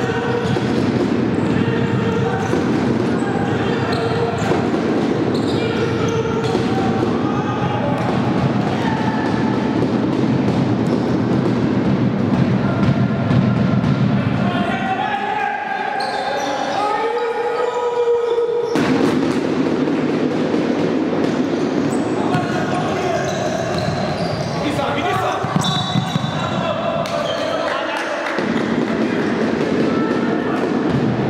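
A futsal ball kicked and bouncing on a wooden indoor court, amid players' and spectators' shouts echoing in the sports hall.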